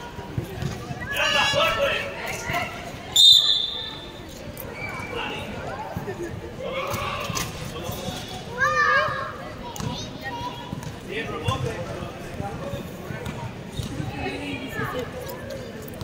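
Basketball bouncing on a hard outdoor court during play, with players calling out to each other; a sharp, loud sound about three seconds in.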